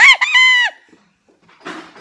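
A boy's high falsetto shriek, under a second long, with a short break near its start and a drop in pitch as it cuts off.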